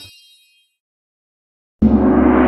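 A bell-like ringing chord from the music fades out, then silence, then near the end a sudden loud cartoon smoke-puff sound effect begins: a noisy rush with a low drone underneath.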